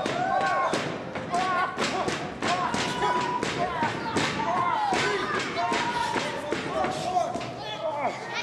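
Wrestling crowd with children's high voices shouting and calling out, over rapid, irregular sharp claps or knocks, several a second.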